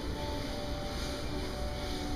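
A low steady rumble with a few faint held musical notes over it.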